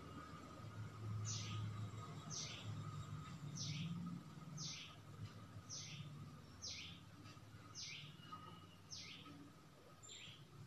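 A bird repeating a short, high chirp that falls in pitch, eight times at an even pace of about one a second, over a low steady hum.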